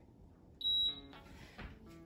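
A single short, high electronic beep from a Gymboss interval timer, lasting about a third of a second, signalling the start of an exercise interval.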